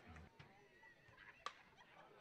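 Near silence: faint ballpark background with one short, faint click about one and a half seconds in.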